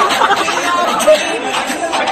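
Several people's voices talking and calling out over one another in a large hall, with music weaker underneath.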